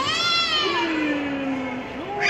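A young child's high-pitched squeal that rises briefly, then falls away over about a second, followed by a lower, drawn-out voice sound.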